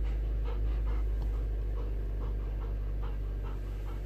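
Golden retriever panting close by, a steady rhythm of about three pants a second.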